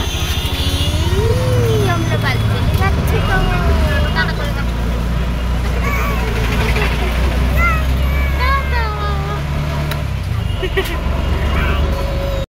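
A toddler's cooing and squeals, short rising and falling calls without words, over a steady low rumble.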